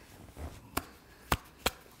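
A stiff paper card being tapped: three short, dry taps, the last two close together, between pauses in speech.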